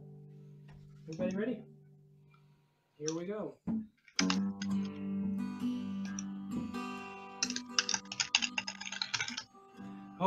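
Acoustic guitar strumming: a chord dies away, two short bursts of voice come after a pause, then steady strummed chords start about four seconds in and grow busier toward the end, introducing a sung song.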